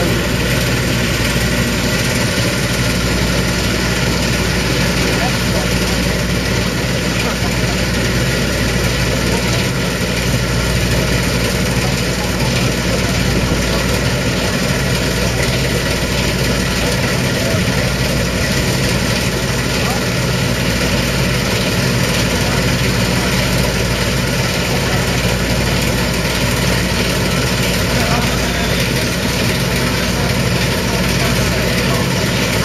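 Engine of a 1991 Sampo-Rosenlew 130 combine harvester running steadily, an even low drone that holds constant throughout, as the driverless combine moves slowly over the grass.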